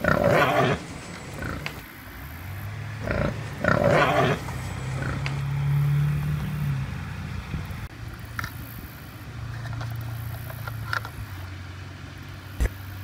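Wild boar sound effect: two loud, rough animal calls, one right at the start and one about four seconds in. After them comes a low steady hum.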